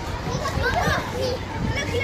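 Children's voices and calls in the background, a loose babble of play chatter over a steady low rumble.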